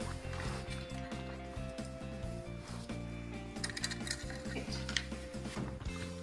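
Steady background music over light metallic clinks and rattles of steel worm-drive hose clamps and exhaust heat shields being handled, a few sharper clinks in the second half.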